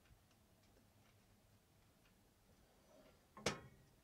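Near silence with faint, scattered ticks, then one sharp click about three and a half seconds in: a fork knocking on the open cast iron waffle iron as the waffle is lifted out.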